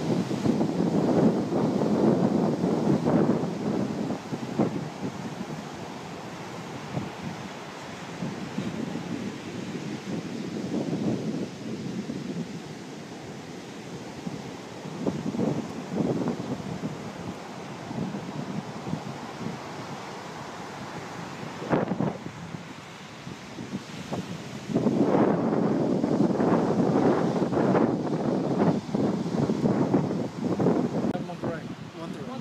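Wind buffeting the microphone in gusts, loudest at the start, briefly in the middle and through the last few seconds, over the steady wash of surf breaking on a sandy beach. A single short knock comes about two-thirds of the way in.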